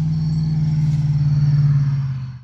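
A passing motor vehicle: a loud, steady low engine hum that grows louder toward the end, with crickets chirping faintly.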